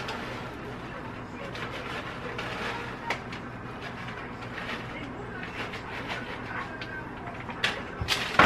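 Crinkling and rustling of a plastic bag of shredded cheddar cheese as it is opened and emptied into a bowl, irregular small crackles over a low steady hum.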